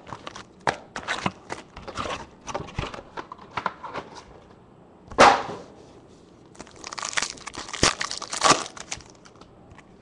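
Baseball card pack wrappers and box packaging being torn open and crinkled by hand: a run of irregular crackles and rustles, with a louder crackle about five seconds in and a denser spell of crinkling from about six and a half to nine seconds.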